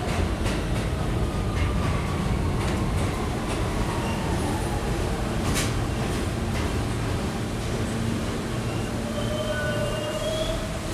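New York City subway train running on the tracks: a dense, steady rumble with irregular clicks from the wheels and a faint whine that falls slowly in pitch. Higher squealing tones come in near the end.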